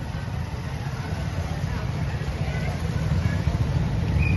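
Steady low rumble of a vehicle engine running close by, slowly growing louder, with faint voices of a crowd behind it.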